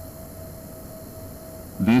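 Steady hiss with a faint constant hum tone: the background noise of a voice recording, heard as it starts. A voice begins speaking near the end.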